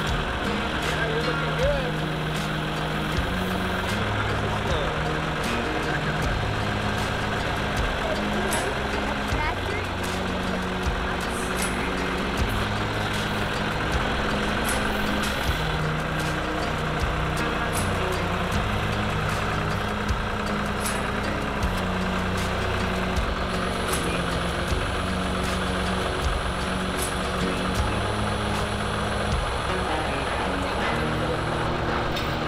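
A John Deere farm tractor's engine running as its front loader handles a steel cattle guard, with background music playing over it.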